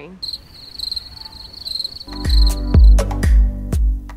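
Crickets chirping in a steady high trill. About halfway in, music with a heavy bass beat starts, about two beats a second, and soon drowns the chirping out.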